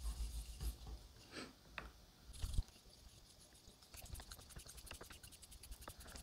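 Faint scraping of a straight razor's blade stroked on a wet Shapton 5000 whetstone with a light slurry. There are scattered small ticks at first, then a fast run of fine clicks about two-thirds of the way in.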